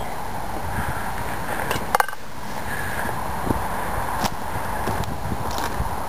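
Steady low rumble of light wind on the microphone outdoors, with a couple of sharp clicks about two seconds in.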